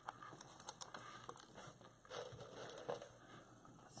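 Faint rustling and light scattered clicks of deco mesh and plastic zip ties being handled on a wreath board.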